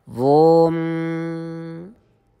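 A man chanting one long held note in a Sanskrit stotram recitation. The voice slides up into the note at the start, shifts vowel a little under a second in, and stops just before two seconds.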